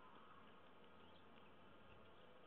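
Near silence with a few faint, light ticks of a lock pick working the pins inside a TESA T5 lock cylinder.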